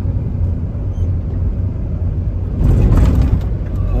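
Steady road and engine rumble of a moving vehicle, heard from inside, swelling louder for about a second near three seconds in.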